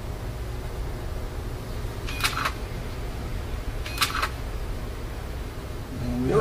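Two brief clicks about two seconds apart as hands handle an opened laptop's parts and screen lid, over a steady low hum.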